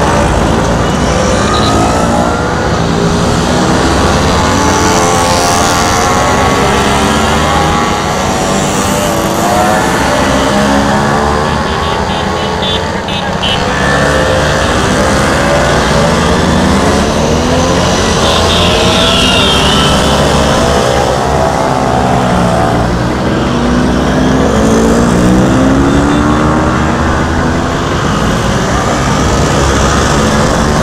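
A procession of Vespa scooters, mostly vintage two-stroke models, riding up a steep climb one after another. Several small engines overlap, each rising and falling in pitch as it comes up and passes.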